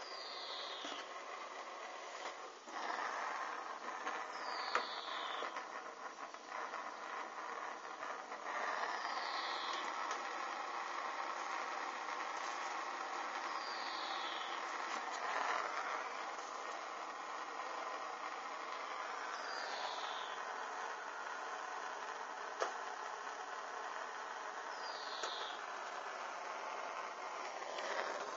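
Hanging synthetic material burning and dripping: a steady hiss, with a short falling whistle about every five seconds, typical of flaming drips of molten plastic as they fall.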